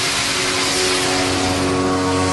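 A rushing whoosh with a chord of held steady tones building under it: the swell of an animated intro sting.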